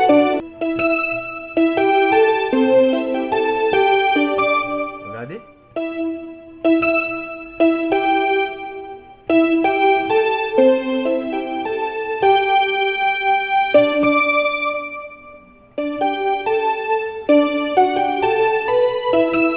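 Yamaha portable keyboard on a piano voice, the right hand playing a solo melody line of quick notes in short phrases. The notes die away in brief pauses about five and fifteen seconds in.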